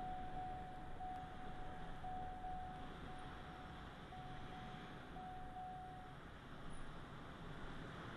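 Low rumble and hiss of a car driving, heard from inside the cabin. Over it a thin steady beep-like tone, broken by short gaps about once a second, stops about six seconds in.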